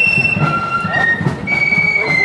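Marching flute band playing a tune: high, held flute notes stepping from one pitch to the next, over a steady drum beat.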